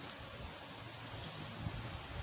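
Faint rustling and scuffing in dry leaf litter as a thin stick is pushed into the soil, with a couple of light ticks about three quarters of the way through.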